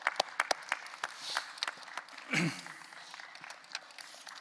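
Applause: scattered separate hand claps, dense at first and thinning out after about a second. A brief voice sound comes about halfway through.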